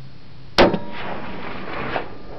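A single shot from a Remington 700 LTR bolt-action rifle in .308 about half a second in, a sharp crack whose report rolls on and echoes for more than a second before fading.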